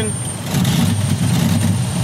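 Chrysler 3.3-litre V6 in a 2001 Dodge Grand Caravan running rough just after a long crank, struggling to keep running: the number five fuel injector is stuck open and floods its cylinder with raw fuel.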